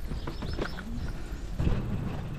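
Wind rumble on the microphone of a moving touring bicycle, with a quick run of light clicks and knocks from the bike in the first second.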